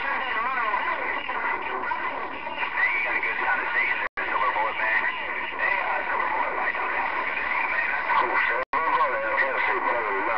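Galaxy CB radio's speaker carrying distorted, hard-to-make-out voices of other stations over static. The audio cuts out completely for a split second twice, about four seconds in and again near the end.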